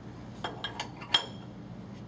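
Several sharp metallic clinks and clicks from hands working on parts at the bed of a platen letterpress, the loudest a little past a second in, over a low steady hum.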